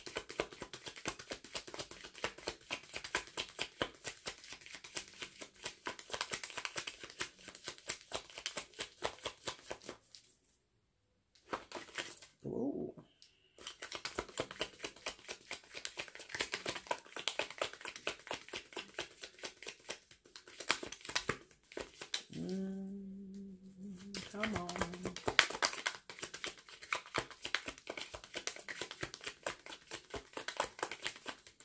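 Tarot deck being hand-shuffled: a rapid, continuous patter of card edges flicking against each other, breaking off briefly about ten seconds in. A person's voice sounds briefly twice, the second time a steady hum of about two seconds.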